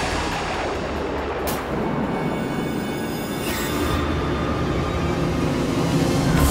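Suspenseful dramatic background score: a sustained low drone under a dense texture, with two swelling whooshes about a second and a half and three and a half seconds in.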